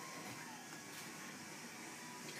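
Quiet room tone: a faint, steady hiss with no distinct sound.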